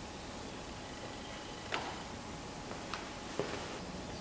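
Low steady hiss of room tone with three faint clicks, the first a little under two seconds in and two more close together near the end.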